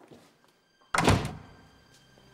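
A glass-paned wooden door being pulled shut about a second in: one loud thud that dies away quickly.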